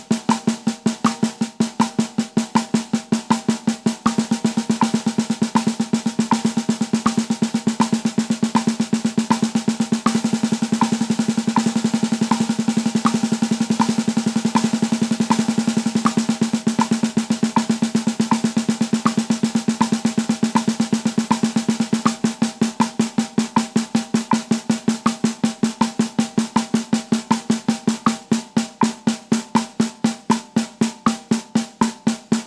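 Snare drum played with sticks in steady alternating single strokes over a metronome click at 80 BPM. The strokes get denser through the middle and thin out again near the end, as the exercise climbs through faster subdivisions (sixteenths, then sextuplets) and comes back down.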